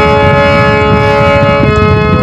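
A damaged harmonium holding a steady reed chord of several sustained notes, with no singing, over a rough low noise.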